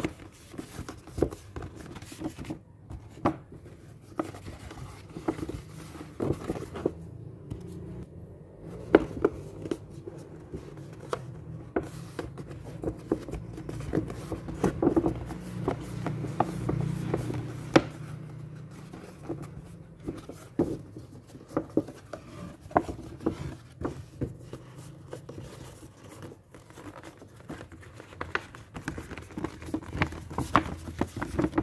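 Stiff paper of an old wall calendar being handled, unfolded and creased into a paper bag: irregular crackles, rustles and sharp snaps of the paper, over a low steady background hum.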